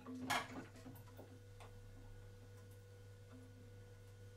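A brief splash of water as a head is dunked into an ice bath, then a few faint ticks of water over a steady low hum.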